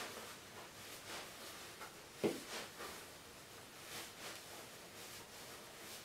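Faint rustling of fabric and polyester fiberfill as hands push and pack stuffing into a sewn fabric balloon, with a short thump about two seconds in.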